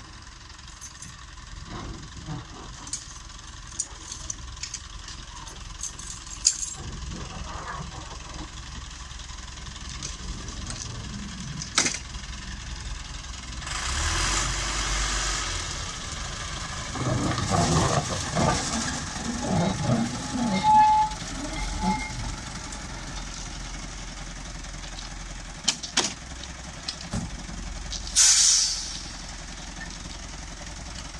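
A small 2 ft gauge Baguley-Drewry diesel locomotive running with a steady engine rumble. There is a burst of hiss about halfway, several seconds of loud irregular clattering as it moves along the track, and another short hiss near the end.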